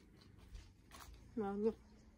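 A woman says one short word, "no", over a quiet background with a faint click or two just before it.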